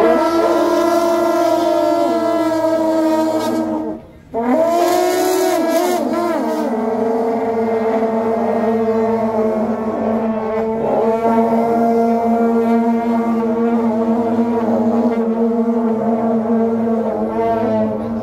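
A group of shaojiao, long straight brass horns with wide flared bells, blowing long held notes together at several pitches. They break off briefly about four seconds in, then come back in and hold a steady chord.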